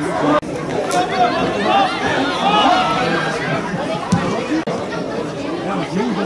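Spectators' overlapping chatter and calls at a football match, several voices talking at once. A sharp knock comes about a second in and another about four seconds in.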